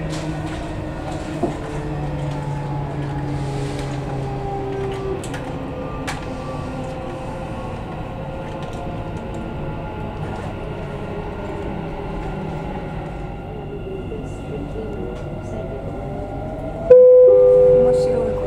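Metro train running, heard from inside the carriage: a steady rumble of wheels on rail, with the electric motors' faint whine slowly sliding in pitch. Near the end, a sudden loud steady two-note tone sounds.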